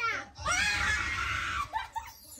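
A person's loud scream, held for over a second, after a short falling cry. It cuts off just before the end.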